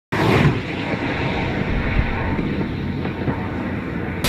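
Tesla Model S Plaid electric sedan driving fast on a track: a steady rush of tyre and wind noise with no engine note.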